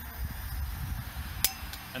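A single sharp click about one and a half seconds in, from the propane torch's push-button piezo igniter, over a low background rumble.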